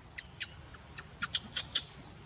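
Young macaque squeaking: a quick series of about seven short, high-pitched squeaks, coming faster in the second half.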